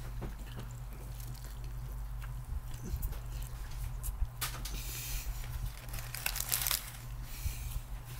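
A man biting into and chewing a sandwich with crispy onions and bacon, giving soft crunching and mouth noises. Two brief louder crackles come about four and a half and six and a half seconds in, all over a steady low hum.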